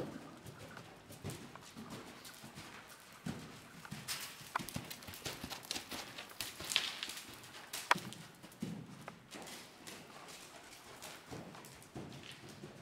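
Horse trotting on sand arena footing, a run of soft, dull hoofbeats, with a few sharp clicks near the middle.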